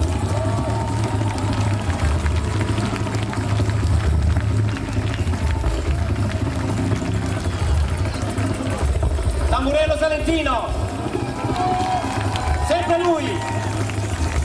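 Live folk band playing through a festival PA, with a heavy steady bass and dense instrumental sound. A voice comes in about ten seconds in, in short rising and falling phrases.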